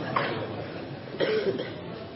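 A person coughing: two short coughs, one right at the start and another about a second later.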